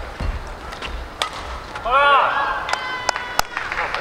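A badminton doubles rally ends. Rackets strike the shuttlecock with sharp cracks and feet thud on the court. About halfway a short voice calls out, followed by a high squeak, with another sharp crack near the end.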